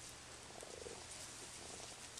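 Two short low animal calls, a clearer one about half a second in and a fainter one near the end, over a steady faint hiss.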